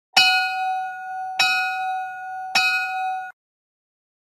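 A bell-like chime struck three times, a little over a second apart, each strike ringing on until the next; the ringing cuts off suddenly after the third strike.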